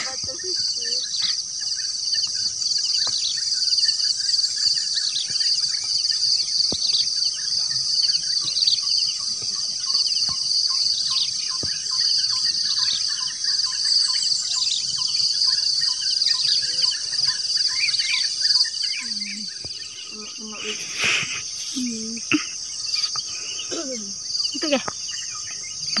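A steady, high-pitched chorus of insects, with many short chirping bird calls scattered over it throughout.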